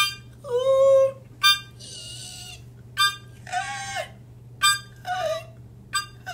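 A small harmonica played in short blasts: a sharp note, then a longer note that bends in pitch, about four times over.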